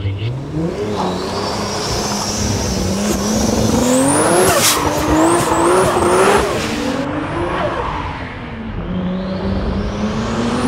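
Turbocharged 2JZ-GTE straight-six of a Toyota Supra MK4 revving hard as the car slides into a drift. The revs climb, then pulse up and down under the throttle, with a high whine rising over the engine and tires squealing on the pavement. The engine drops back a couple of seconds before the end and then picks up again.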